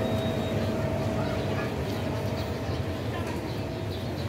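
Street traffic noise: a steady low rumble of vehicles, with a faint steady whine running through it.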